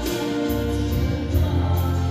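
A woman sings a Christian song into a handheld microphone over an accompaniment of sustained bass notes that change a few times.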